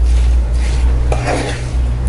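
Wooden spatula stirring and scraping a thick milk-powder and sugar mixture in a nonstick pan, with a louder scrape about a second in, over a steady low hum.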